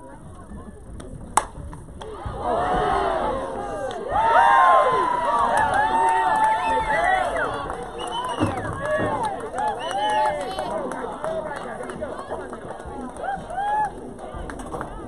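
A single sharp crack of a softball bat hitting the ball, followed about half a second later by players and spectators shouting and cheering, loudest a few seconds in and tailing off.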